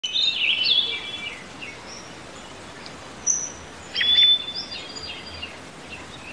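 Birdsong: birds chirping and whistling, with a cluster of calls in the first second and another about four seconds in that includes one held whistle, over a steady background hiss.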